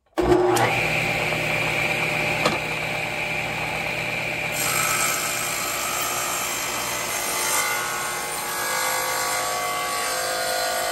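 Table saw switched on, its motor and blade spinning up to a steady high whine; about four and a half seconds in the blade starts ripping a wooden strip fed along the fence, and the sound turns rougher and fuller as it cuts.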